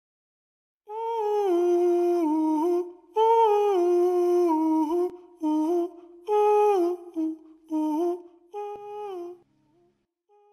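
A solo voice humming a slow, wordless melody in phrases, starting about a second in. The first two phrases each last about two seconds and the later ones are shorter.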